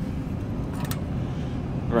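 Steady low mechanical rumble of running machinery, with one faint click just under a second in.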